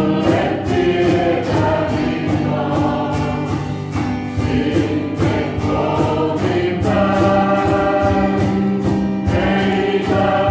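Small mixed choir of men and women singing a gospel hymn together, with held notes that change every second or so over an accompaniment that keeps a steady beat of about two to three pulses a second.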